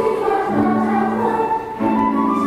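Children's choir singing, holding notes that change about half a second in and again near the end.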